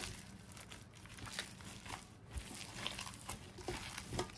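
Gloved hand squeezing and kneading raw spiced lamb mince with cornflour in a stainless steel tray: faint, irregular wet handling sounds with small ticks.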